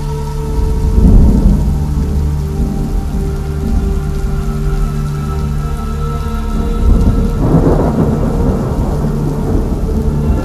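Rain and rolling thunder used as a sound effect in a vocal trance track, layered over sustained synth chords. Thunder swells about a second in and again around seven to nine seconds in.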